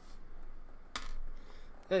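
A small metal thumbscrew set down on a wooden desk: a sharp click about a second in, with light handling noise around it.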